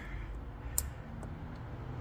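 A single sharp plastic click from a car mirror's wiring-harness connector, about a second in, as its red locking tab is worked up with a fingernail; low, steady room noise underneath.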